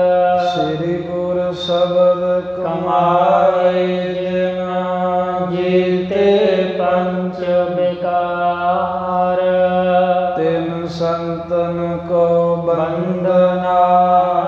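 A man's voice chanting a Sikh devotional line in long, slowly held notes, with short hissing 's' sounds between some of the notes.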